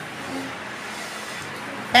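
Steady, even background noise in a pause of speech, with a short faint voice near the start.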